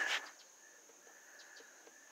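Near silence with faint outdoor background after the last word of speech fades out just after the start.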